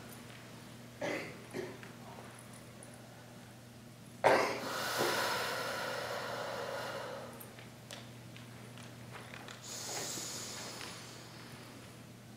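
Slow paced breathing close to a headset microphone. A long breath out starts about four seconds in and lasts about three seconds, and another breath comes near the end, in the rhythm of square breathing.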